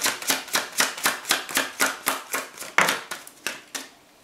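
A tarot deck being shuffled by hand, the cards snapping together in a quick even rhythm of about four a second. Near the end the rhythm breaks into a few separate snaps as cards are drawn and laid out on the table.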